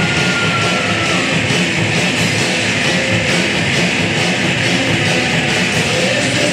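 Loud distorted rock music from a band with electric guitars, bass and drums, played without vocals. A held high guitar note slides slightly down over the first second or so, over a steady drum beat.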